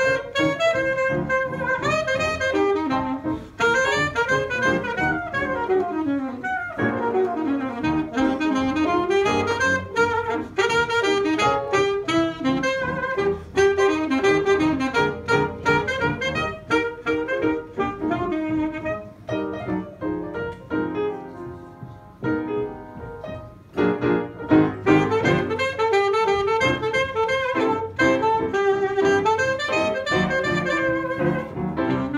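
Saxophone and piano playing a 1920s jazz tune together, the saxophone carrying a moving melody over the piano. The music thins and softens briefly about two-thirds of the way through, then comes back at full strength.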